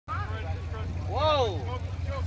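Steady low rumble of the mud-drag trucks' engines idling down the track, with spectators' voices over it, one of them a rising-and-falling call a little past a second in.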